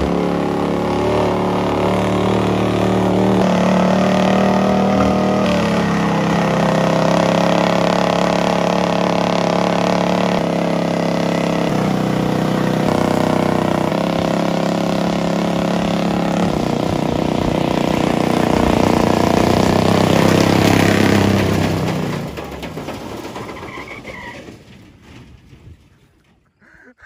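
Chevy squarebody truck's engine running hard under load, its pitch holding for a few seconds at a time and then stepping up or down several times, before it fades away over the last few seconds.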